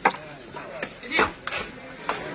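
Sharp knocks of a woven sepak takraw ball being struck, three in all, the first the loudest, with crowd voices in between.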